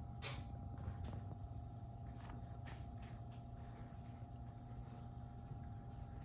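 Quiet room tone: a steady low hum with a faint steady tone above it and a few soft clicks.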